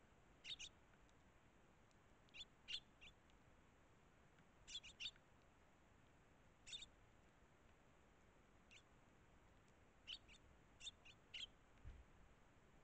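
Eurasian tree sparrows giving short, high chirps, faint, often two or three in quick succession, with a cluster every second or two.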